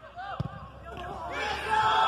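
A football is kicked once, a single dull thump about half a second in. A second later many spectators' voices rise into a loud shout and cheer.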